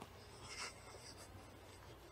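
Near silence with a low steady hum, broken by one faint, brief scuff or rustle about half a second in.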